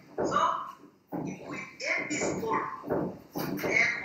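A man speaking, with a short pause about a second in.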